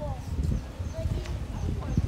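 Outdoor neighbourhood background sound: a steady low rumble with faint, distant voices.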